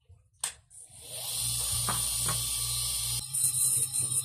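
Dental lab motor handpiece switched on with a click and running up to a steady high whir over a low hum. About three seconds in the sound turns uneven, with louder rasping bursts as the grinding stone is put to the plastic crown.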